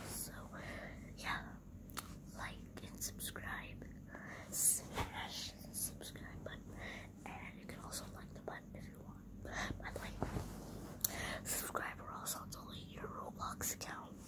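A boy whispering close to the microphone in short breathy phrases with pauses, with one louder hiss about five seconds in.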